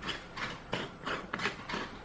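Zinc screw lid being twisted off an old Atlas glass mason jar: a series of short grinding scrapes, about three a second, as the metal lid turns on the glass threads.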